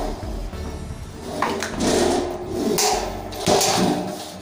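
Background music, with scraping and knocking as a satellite dish is handled and turned over on the floor. The handling noise is loudest in two bursts, one in the middle and one near the end.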